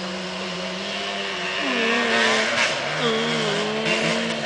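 A small off-road vehicle's engine running steadily, then revving up twice in the second half as it rides through the brush.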